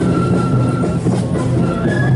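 Marching flute band playing a tune: a high flute melody in held notes that step up and down, over a steady low background rumble.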